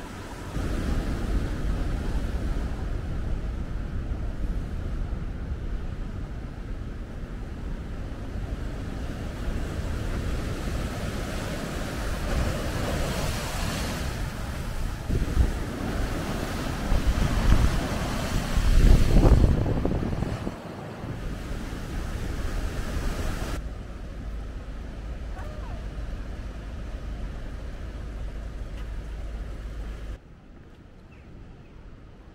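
Rough sea surf breaking and washing over rocks at the foot of a stone sea wall, with wind rumbling on the microphone. The surging swells and fades, loudest about 19 seconds in.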